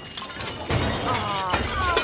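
Metal pots and pans clanking and crashing together in a long, dense clatter as they are knocked about and fall.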